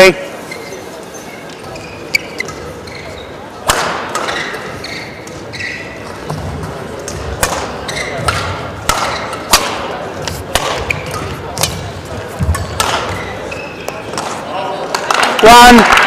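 Badminton rackets striking a shuttlecock: a series of sharp cracks, roughly one every half second to a second, starting about four seconds in, in a large sports hall.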